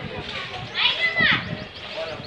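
Crowd chatter with children's voices, broken about a second in by a loud, high-pitched shout that rises and falls in pitch.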